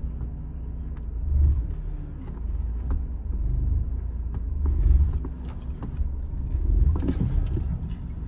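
BMW E46 318i's four-cylinder engine heard from inside the cabin, a low rumble that swells three times under light throttle as the car creeps forward onto a car trailer, with a few light knocks.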